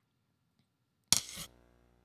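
A single sharp hit with a short ringing tail, about a second in: a computer-generated impact sound that a model trained on drumstick hits produces for a ball bouncing against a brick wall, played over the hall's loudspeakers.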